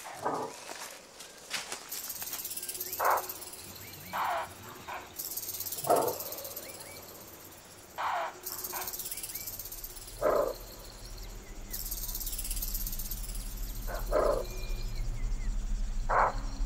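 Bushbuck barking from cover: seven short, sharp calls, each a fraction of a second long, spaced one to four seconds apart.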